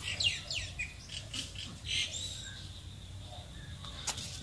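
A small bird chirping. A quick run of high falling chirps comes in the first second, more scattered chirps around two seconds in, then a thin steady high note.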